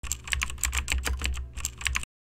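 Computer keyboard typing sound effect: a quick run of key clicks, about seven a second with a short break partway through, over a steady low hum, as text is typed into an on-screen search bar.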